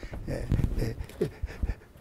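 A man chuckling: short, breathy bursts of laughter in an uneven string.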